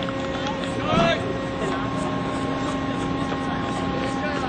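Baseball players shouting and calling out across the field, with one louder shout about a second in, over a steady mechanical hum.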